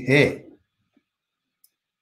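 An elderly man's voice finishing a sentence with one word, then silence broken only by one faint click near the end.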